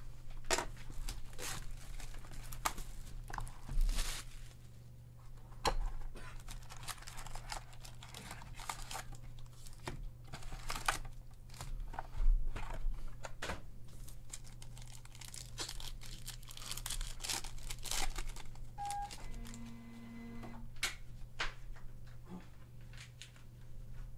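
A hobby box of 2018 Panini Unparalleled football cards being opened and its foil card packs torn and crinkled open by hand: an irregular run of crackles, rips and rustles.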